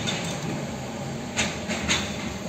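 Steady vehicle rumble heard from inside a car, with two short knocks about a second and a half in and near the end.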